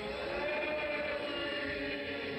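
Background music of several voices chanting or singing in long, slowly gliding held notes.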